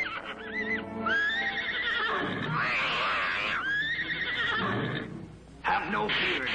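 A cartoon horse whinny sound effect for a unicorn: two long neighs that rise and then fall in pitch, over background music. A new loud sound begins near the end.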